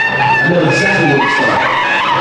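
A crowd cheering and screaming, with several drawn-out high-pitched screams held for about a second over loud shouting.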